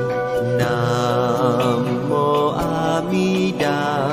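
Buddhist devotional chant set to music: a sung voice holds long, wavering notes over a steady instrumental backing.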